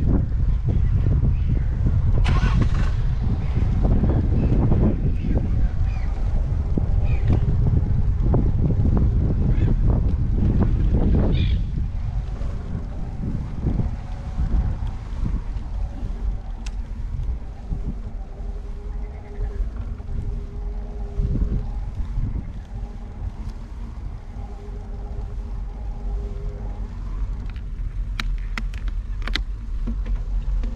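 Wind rumbling on the microphone of a camera moving along a road, mixed with the noise of wheels rolling over brick paving. The rumble is loud at first and drops about twelve seconds in.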